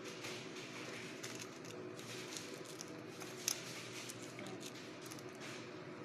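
Faint kitchen background: a steady low hum with scattered small clicks and crackles, and one sharper click about halfway through.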